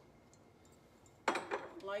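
A small milk glass piece set down on a hutch shelf: one sharp clink a little past a second in.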